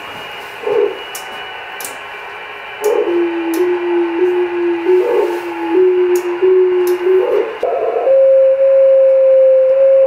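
Audio from an Icom IC-910H satellite radio receiving a downlink near 437.5 MHz: a single pure beat tone over receiver hiss, stepping slightly in pitch. About eight seconds in it jumps to a higher, steadier tone. This is the received signal the ground station decodes as Morse.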